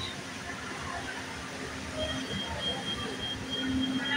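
Busy mall food court ambience: a steady low hum under a murmur of people. From about halfway a faint, high beeping tone repeats in short dashes.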